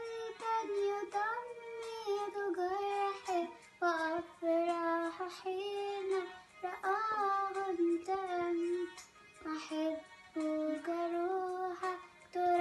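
A young girl singing an Arabic Christian hymn solo and unaccompanied, in phrases of held, gliding notes with short breaths between them.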